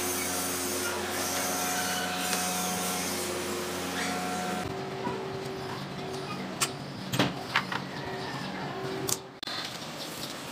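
A steady low machine hum, whose pitch changes about halfway in, with several short sharp clicks a couple of seconds later as the tachometer cable's end fitting is worked loose from the motorcycle's cylinder head.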